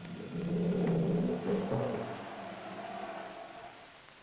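A low, sustained droning tone with overtones on the film's soundtrack, swelling about a second in and then slowly fading away.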